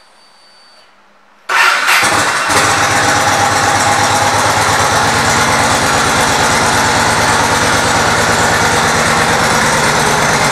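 2003 Yamaha Road Star Warrior's V-twin engine, fitted with a Cobra exhaust, starts suddenly about a second and a half in and settles within a second. It then idles steadily with an even pulsing beat.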